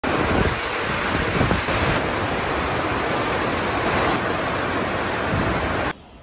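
Heavy storm rain pouring down steadily, a loud even hiss that cuts off suddenly near the end.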